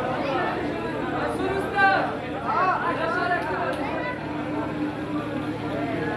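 Chatter of many men talking over one another in a crowded room during a meal, one voice briefly louder just before two seconds in, over a steady low hum.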